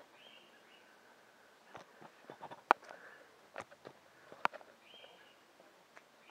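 Faint bird calls over quiet outdoor surroundings, broken by several sharp clicks, the loudest about halfway through.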